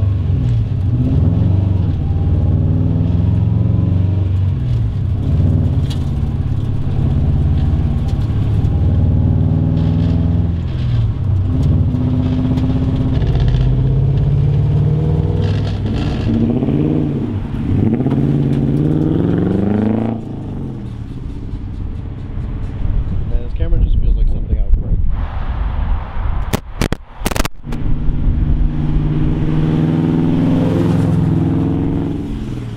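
Straight-piped Toyota 1UZ 4.0-litre V8 in a Mazda B2200 mini truck, loud from inside the cab, its pitch climbing and dropping again and again as the truck accelerates and shifts through the gears. About two-thirds through it turns quieter, heard from outside as the truck drives up, with a few sharp clicks near the end.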